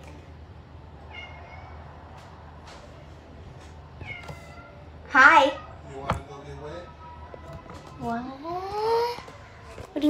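Domestic cat meowing: one loud, wavering meow about five seconds in and a longer, rising meow near the end, with a couple of faint chirps earlier. A single sharp click comes just after the first meow.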